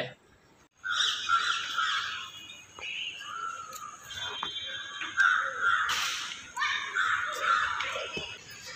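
Several birds calling over one another in repeated bursts, with a few sharp clicks among them.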